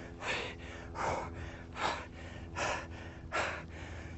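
A man breathing hard from exertion: five sharp, evenly spaced breaths, about one every 0.8 seconds, during a set of weighted lunges with twists.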